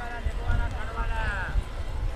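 Hooves of a group of ridden horses on dry, loose dirt, an irregular low clatter, with faint distant voices.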